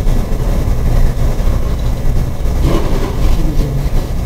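Low, steady rumbling handling noise from a handheld wireless microphone being passed over and gripped.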